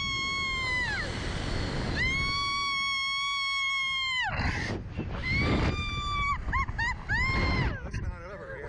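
A woman screaming: long, high, held screams, then a run of shorter yelps in the last few seconds, over wind rushing past the microphone as the Slingshot ride flings the riders.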